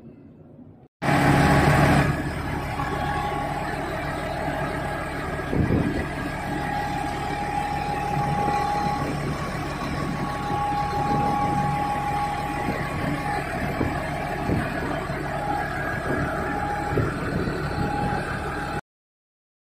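Diesel engine of a Massey Ferguson 8732 S Dyna-VT tractor running steadily, heard up close, starting abruptly about a second in. A high whine comes and goes over the engine noise.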